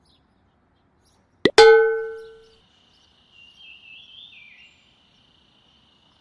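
A single loud metallic clang with a ringing tone that dies away over about a second, a cartoon sound effect at a scene change. Faint bird chirps and a steady high insect-like trill follow.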